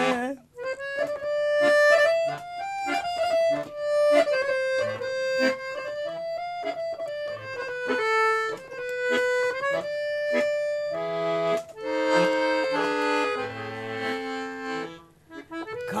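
Dallapé piano accordion playing a solo melody of held and quick-moving reedy notes, with fuller chords in the last few seconds before a brief pause.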